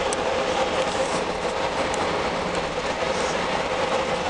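Steady engine and road noise inside the cabin of a moving bus, with a faint constant hum.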